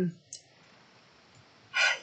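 A woman's voice trails off, a faint click follows, and after a short pause there is an audible breath in just before she speaks again.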